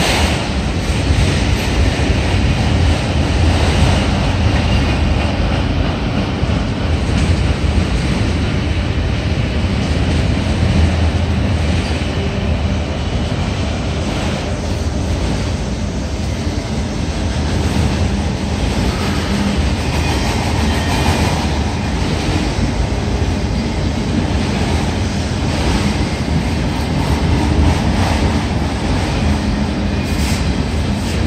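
Long string of autorack freight cars rolling past close by: the loud, steady rumble of steel wheels on rail.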